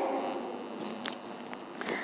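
Faint rustling handling noise with a few small clicks over a low room hiss, in a pause between speech.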